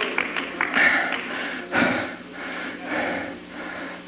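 Church music during a pause in the sermon, with a congregation clapping.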